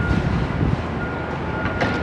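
Steady low rumble of vehicle noise with a faint, thin steady whine above it.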